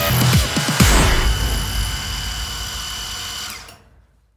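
Milling machine end mill cutting a slot in a metal block: a loud machining noise with a steady high whine that fades and then cuts off shortly before the end.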